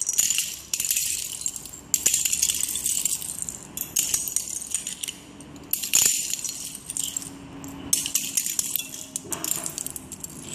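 Plastic Lego bricks clattering and rattling as handfuls are dropped onto a pile of bricks, in repeated bursts about every one to two seconds.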